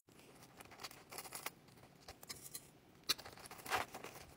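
Faint rustling of sheer lace net being handled and stretched over a wig head, with a few soft ticks and handling noises; the loudest come near the end.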